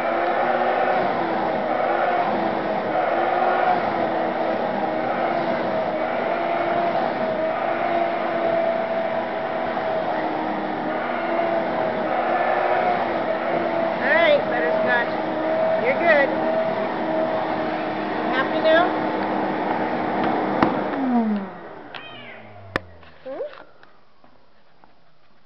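Vacuum cleaner running steadily with a hum, with a few short cat meows partway through. Near the end the vacuum is switched off and its motor winds down, falling in pitch.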